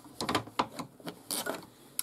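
Embroidery hoop being handled and seated on an embroidery machine: a few irregular clicks and knocks of plastic and metal, with fabric being smoothed.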